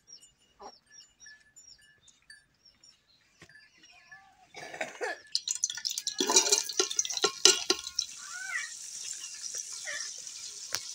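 Small birds chirping for the first few seconds; then, about five seconds in, sliced onions go into hot oil in a metal pot on a wood fire and a loud steady sizzle takes over, with a few knocks of the ladle against the pot.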